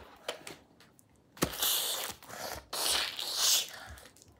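A child making hissing sound effects with his mouth: two long hisses of about a second each, the first starting with a sharp click, in play for sucking up an opponent's energy.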